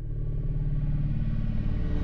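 Low rumbling drone of a channel logo sting, fading in from silence and swelling over the first half second, then holding steady.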